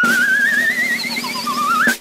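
A whistle-like tone with a fast, even wobble, over a hiss, gliding slowly upward; near the end it drops lower, rises again quickly and cuts off with a click.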